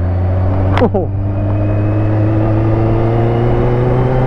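Sport motorcycle engine pulling steadily under way, its pitch rising slowly as the bike gathers speed.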